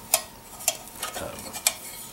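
Metal canteen cups being handled, giving three light metallic clinks spread over about two seconds, with fainter taps between.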